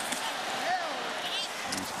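Steady crowd noise in a football stadium, a continuous wash of many voices with a few faint individual shouts.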